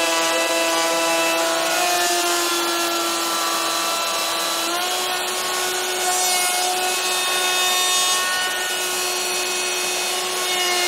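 Festool OF 1400 plunge router running at speed and cutting a connector pocket into a wooden beam along an MFS 400 routing template: a steady high motor whine over the rasping noise of the bit in the wood. The whine dips slightly in pitch and then steps back up about five seconds in.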